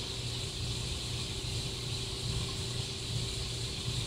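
Steady room noise: a low hum with an even hiss over it and no distinct event, during a pause in speech.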